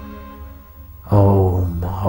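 A man's deep voice chanting a mantra in long, held syllables. It starts loudly about a second in, after a steady held drone fades away.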